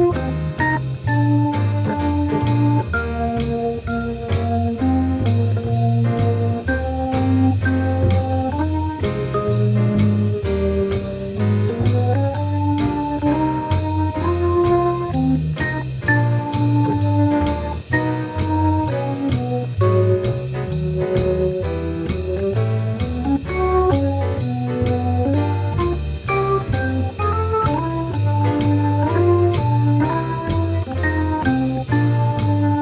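Instrumental swing jazz foxtrot led by a Hammond B3 tonewheel organ playing held chords and melody, over a moving bass line and a steady drum beat of about two strokes a second.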